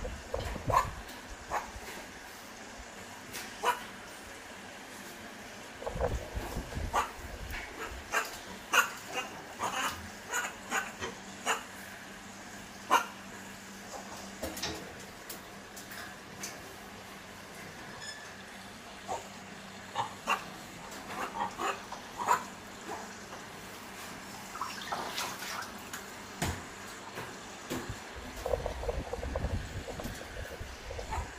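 Macaques moving about a metal wire cage with a water tub: scattered short knocks, rattles and splashes, with short animal calls in between.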